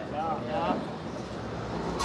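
A man's voice murmuring softly in the first second, then steady outdoor background noise.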